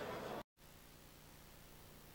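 Background noise that cuts off abruptly about half a second in, after a brief dropout, leaving near silence: a low steady hiss with a faint steady hum.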